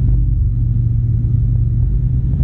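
Steady low drone of an Alisport Yuma ultralight's engine and propeller, heard inside the cockpit in flight, with an even hum and rumble and no change in pitch.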